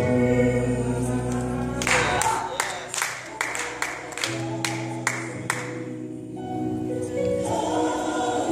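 Gospel choir music with held sung chords over a bass line, broken about two seconds in by a quick run of sharp accented hits lasting about three and a half seconds before the sustained chords return.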